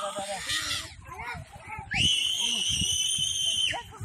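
A high-pitched human scream held at one steady pitch for nearly two seconds, starting about halfway in and cutting off just before the end, after a moment of voices talking.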